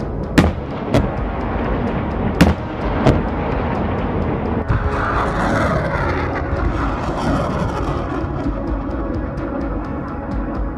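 Background music over rocket artillery launches. There are four sharp bangs in the first three seconds, then a rushing roar from a rocket leaving its launcher from about five seconds in.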